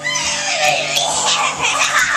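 A young child's high-pitched squealing, breaking out suddenly at the start and wavering up and down in pitch.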